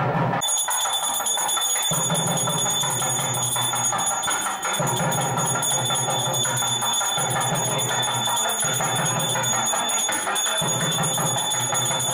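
Temple bell ringing continuously, starting about half a second in and holding steady, over music.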